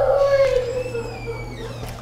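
A young child's long, drawn-out vocal whine: one held, pitched note that slowly fades away.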